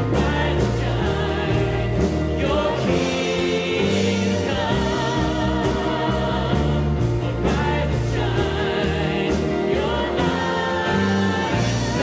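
Live worship band playing a slow hymn with a steady beat, acoustic guitar and piano under a male lead vocal.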